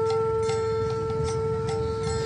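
Harmonium holding one steady note, with a few light clicking strikes keeping time over it.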